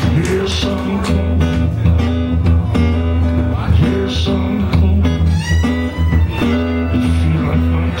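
Live blues played by a small band: guitar over a steady low bass line, with harmonica played into a microphone.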